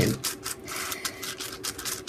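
Palette knife scraping and spreading thick modelling paste on parchment paper in quick, repeated strokes as blue acrylic paint is mixed into it to tint it.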